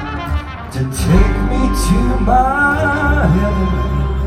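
Live band playing a song with singing, with drum hits in the first half and a sung phrase of wavering pitch in the second half.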